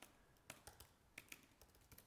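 Faint, scattered key clicks of a computer keyboard being typed on.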